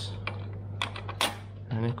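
A few light, sharp clicks and taps, the sharpest about a second and a quarter in, as a processor is seated and handled in a desktop motherboard's CPU socket.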